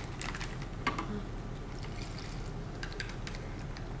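Dyed vinegar being poured from a plastic test tube into a zip-lock bag, a steady soft trickle of liquid.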